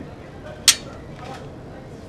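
Small dental instruments being handled over a stainless steel tray: one sharp click about two-thirds of a second in, and a fainter one about half a second later.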